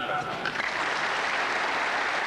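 Large crowd applauding steadily, rising in just after a man's amplified speech breaks off.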